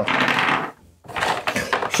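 Clatter of small wooden chess pieces jostling together, in two stretches with a short gap about halfway.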